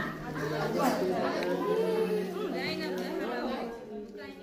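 Several women chatting over one another in a group over a shared meal, with a steady low hum underneath.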